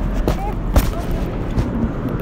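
Steady low rumble of road traffic, with a few short clicks and one sharp, loud knock a little under a second in.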